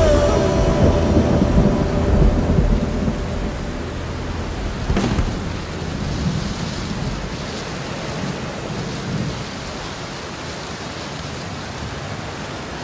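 Thunder rumbling over steady rain. The deep rumble fades over the first several seconds, leaving the hiss of rain.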